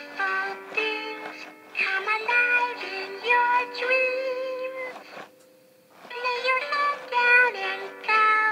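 Big Hugs Elmo plush toy in sleepy mode playing a lullaby from its speaker: a melody of held notes in a synthetic singing voice. It breaks off for about a second a little past halfway, then goes on.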